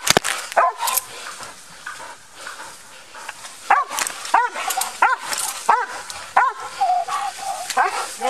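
Police K9 dog barking in a run of about seven short barks from a little under halfway in, worked up after the apprehension. A sharp click at the very start.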